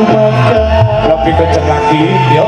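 Dangdut koplo band playing live, in a passage with little or no singing: a repeating bass line, drum beats and a held melody line.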